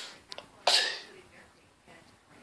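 A boy's short, breathy vocal burst a little under a second in, following the fading tail of a similar one at the start.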